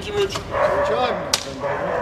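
Film clapperboard snapped shut once: a single sharp clack just past the middle, marking the start of a take.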